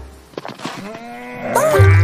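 A cartoon character's long vocal groan that rises slowly in pitch, heard in a lull in the music. The score comes back near the end.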